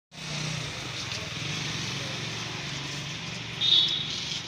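Street ambience with steady traffic noise and a low engine hum, and a brief high-pitched tone near the end that is the loudest sound.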